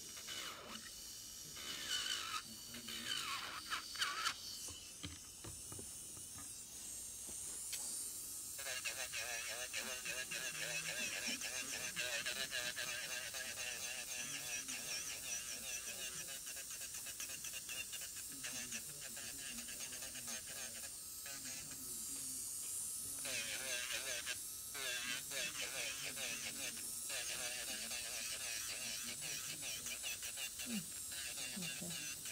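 Indistinct background talk that sets in about eight seconds in and runs on steadily, with a few light clicks before it.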